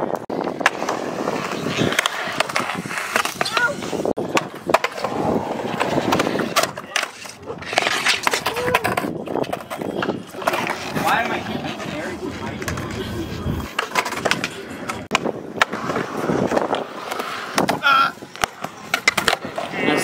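Skateboard wheels rolling on smooth concrete, broken by many sharp clacks and knocks of boards hitting the ground.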